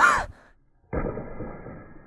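A man's brief sighing 'um', then after a short silence a sudden dull impact about a second in as a thrown ball strikes the cabinet door hanging from a wire wave hanger, its sound fading away over the following second.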